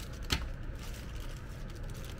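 Small clear plastic bag of rubber tyre valves being handled and opened, with one sharp crinkle about a third of a second in and light rustling after, over a steady low hum.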